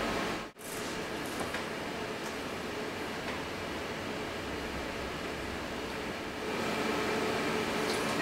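Steady hiss of laboratory ventilation and equipment fans, with no distinct events. It cuts out very briefly about half a second in and grows a little louder near the end.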